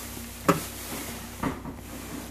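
Grocery items being handled on a counter: two short knocks about a second apart, with faint handling noise between them.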